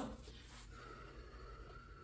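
A faint, soft breathy blow held for about a second, someone blowing to cool hot food.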